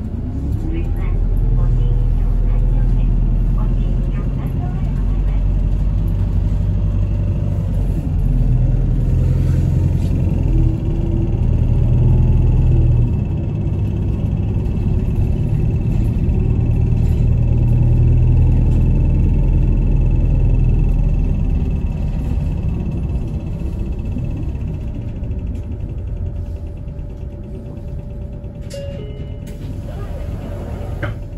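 Bus engine and road rumble heard from inside the bus: a loud low drone that rises in pitch as it picks up speed in the first second, then runs on, swelling and easing with the driving.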